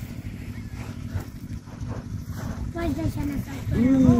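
Wind buffeting the microphone in a steady low rumble, with short bursts of voices late on.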